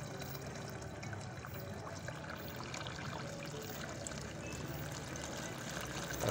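Dirty water being pushed out of a car's cooling system by a flushing machine, pouring steadily from a hose into a floor drain with a constant splashing, and a low steady hum underneath.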